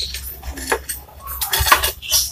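Ceramic tiles clinking and scraping against each other in short, irregular knocks as a loose tile is fitted and marked against a tiled counter edge.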